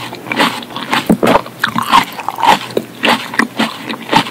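Close-miked chewing of tomato: irregular mouth clicks and crackles, several a second.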